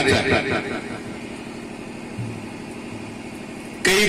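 A steady low engine hum, heard in a pause between amplified speech. The voice fades out in the first half-second and starts again just before the end.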